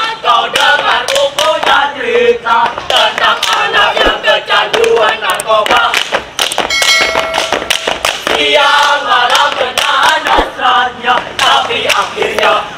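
A troupe of boy scouts chanting and singing a yel-yel cheer in unison, with sharp percussive hits throughout. A brief held steady tone sounds in the middle.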